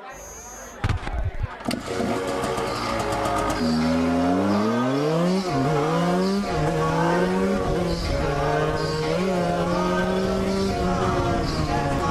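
The KTM EXC 125's two-stroke single-cylinder engine. A few sharp bursts come in the first two seconds, then it revs up in a rising whine, drops at a gear change about five and a half seconds in, and runs steadily at speed.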